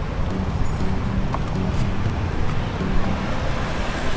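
Street traffic of motorbikes and cars passing close by, a steady engine rumble.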